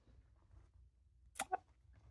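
Quiet room tone with one brief, sharp breath sound from a woman about one and a half seconds in.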